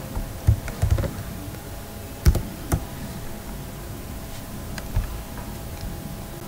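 A handful of scattered clicks and taps from handling the computer at the end of a screen recording, the sharpest about two seconds in, over a steady low hum.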